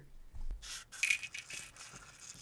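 Dry Life cereal squares rattling and sliding as they are tipped out of a plastic bowl, a few pieces scattering onto the table. The rattle starts about half a second in.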